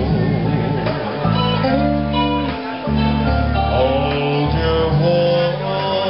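Live band playing an instrumental passage of a song: guitars strumming chords over a low line whose notes change about every second, with no singing.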